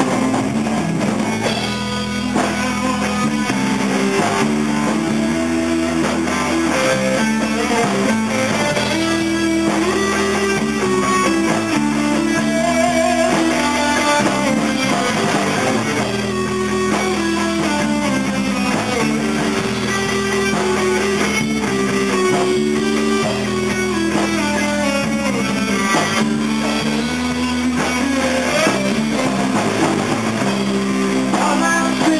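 Live rock band playing an instrumental passage with no vocals: electric guitar and bass guitar over a drum kit, a guitar line moving up and down over sustained low notes.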